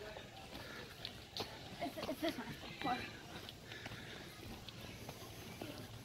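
Quiet footsteps on a dirt path strewn with dry leaves, with faint voices in the background about halfway through.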